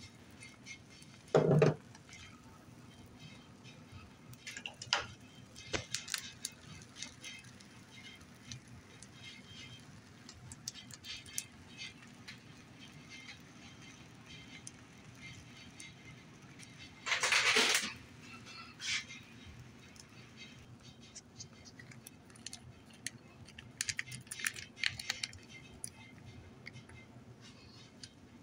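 Scattered light clicks and taps of a serving utensil against dishes and the skillet as broccoli and other toppings are spooned onto an omelette, with a dull thump about a second and a half in and a brief louder clatter a little past the middle.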